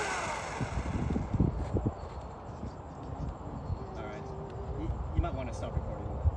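Faint, indistinct voices talking, over a low rumble of wind on the microphone.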